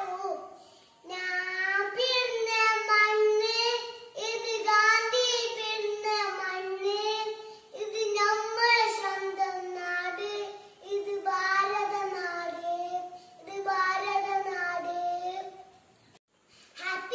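A young boy singing a patriotic song solo, in five sung phrases of about three seconds each with short breaks for breath between them.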